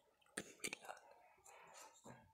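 Faint sound of a marker writing on a whiteboard, with two sharp taps of the marker on the board about half a second in.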